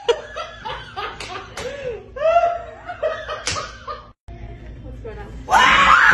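People laughing and shrieking, with a couple of sharp smacks in among the laughter. A brief dropout, then a sudden louder burst of voices near the end.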